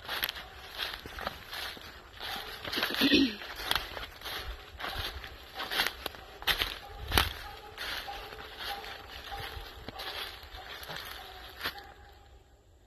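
Footsteps crunching through dry leaf litter and brush at a brisk walk, uneven and continuous, with a brief pitched call about three seconds in.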